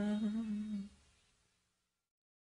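A voice holding one low note at the end of a song. It fades and stops a little under a second in, and silence follows.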